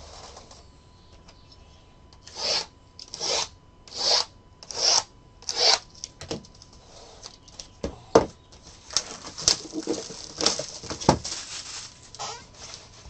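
Cardboard trading-card hobby boxes being handled and slid on a tabletop. Five short scraping rustles come in a row, about one every 0.8 s, then looser rustling with a couple of sharp knocks as boxes are set down.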